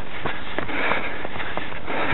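A runner breathing hard in time with the stride, breaths about once a second, with footfalls on the path between them.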